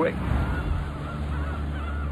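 A flock of birds calling, a string of short arched cries, over a low steady rumble.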